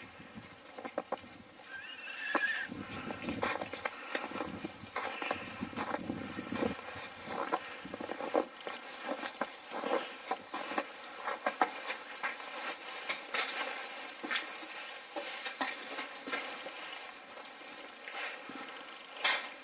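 Footsteps of a person walking, an irregular series of crunching and knocking steps, first over snow and then on the hard floor inside a brick barrack. A short high squeak comes about two seconds in.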